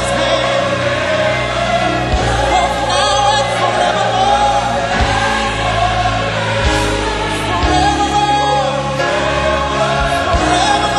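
A choir sings a praise chorus in long, held notes over instrumental backing with a sustained bass line.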